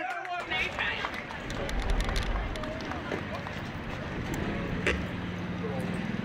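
Outdoor ambience of distant, indistinct voices with wind rumbling on the microphone, and one sharp click about five seconds in.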